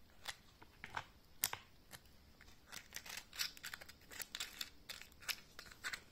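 Small rotary-tool accessories (sanding bands and drums) being handled in a clear plastic organizer case: a run of light clicks and taps of plastic, scattered at first and coming thick and fast over the second half.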